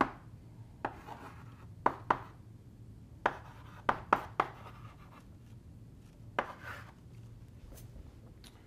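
Chalk writing on a blackboard: sharp, irregular taps and short scratches as each stroke is made, about ten in all, with pauses between them.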